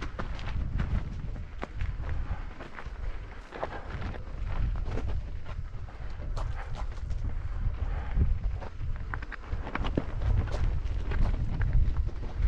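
Mountain bike riding over a rocky dirt singletrack: a run of irregular clicks, knocks and rattles as the tyres hit loose stones and the bike shakes. Under it, a steady low rumble of wind on the microphone.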